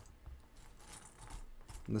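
Small plastic Lego pieces clicking and rattling faintly as fingers sift through a loose pile of them.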